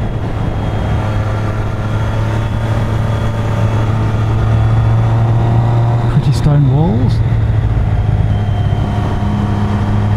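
Motorcycle engine running at a steady cruising speed, heard from the rider's seat with a rush of wind noise over it.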